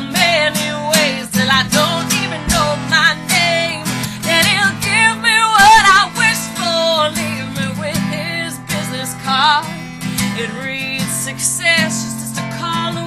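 A woman singing with vibrato over a strummed acoustic guitar, in a solo singer-songwriter performance.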